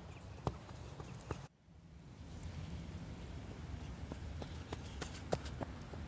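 Runners' footsteps on snow-covered grass: sharp footfalls passing close, a few near the start and then a quicker run of about three a second near the end, over a low steady rumble. The sound cuts out briefly about a second and a half in.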